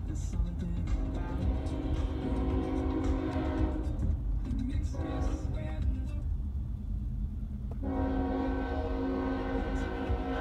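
Diesel locomotive air horn, from an Iowa Interstate GE Evolution-series unit, sounding three steady blasts: a long one of nearly three seconds, a short one of about a second, then another long one. Underneath is the low rumble of road noise inside a moving car.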